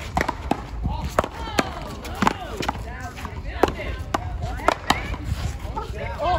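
A paddleball rally: a rubber ball struck by paddles and rebounding off a concrete wall. About a dozen sharp cracks come at uneven intervals, with voices between them.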